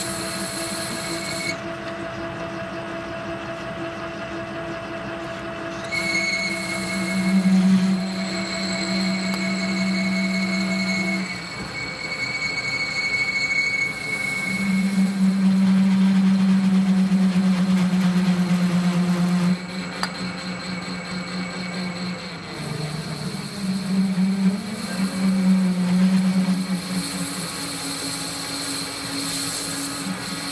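Metal lathe running with a parting tool cutting into an aluminium bar, with a steady whine from the cut. Several times for a few seconds the cut sets up a loud humming chatter, the tool vibrating against the work from too much stick-out or feed and speed that are not quite right.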